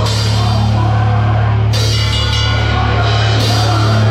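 A metalcore band playing live, heard from beside the drum kit: drums and cymbal crashes over a held low note.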